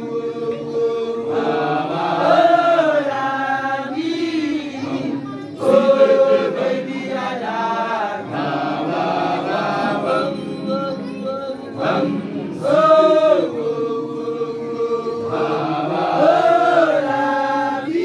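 A group of voices singing an unaccompanied chant together, with long held notes and rising-and-falling phrases that repeat every few seconds.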